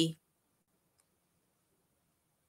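Near silence after a spoken word breaks off, with one faint click about halfway through.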